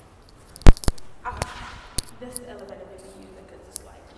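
A few sharp knocks and clicks, the loudest a pair a little under a second in, followed by a faint voice.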